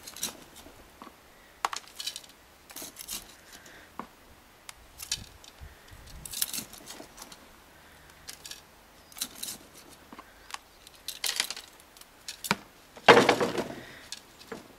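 Gritty compost being poured into a terracotta pot and pressed down by gloved hands: scattered short rattling and scraping sounds, the loudest a longer gritty rush near the end.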